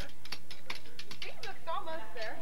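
Hammers striking thin steel reinforcement rods laid on a concrete step, a quick irregular run of taps about four or five a second, as the bent rebar from the coil is beaten straight.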